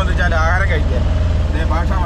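Auto-rickshaw's small single-cylinder engine running under way, heard from inside the open cabin as a loud, steady low throb.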